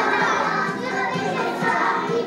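Many young children's voices at once, chattering and calling out together.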